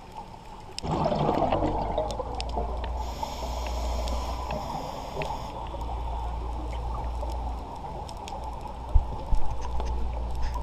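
Underwater scuba breathing: bubbles from the regulator's exhale gurgle and rumble, starting about a second in, with a higher hiss for a couple of seconds in the middle and sharp clicks scattered throughout. Two low thumps near the end are the loudest sounds.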